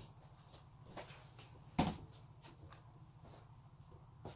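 Light handling clicks and taps as lace trim is glued onto a pin cushion, with one sharp knock on the tabletop about two seconds in, over a steady low hum.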